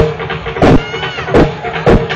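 Drums beating a dance rhythm in sharp strokes. About a second in, a brief high, wavering call rises and falls over them.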